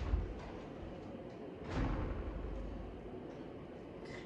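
Two soft low thumps about two seconds apart over faint room noise, the second one longer.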